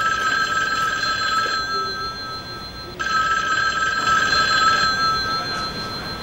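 Mobile phone ringtone ringing: steady electronic tones sounding in two bursts, with a break of about a second and a half near the two-second mark.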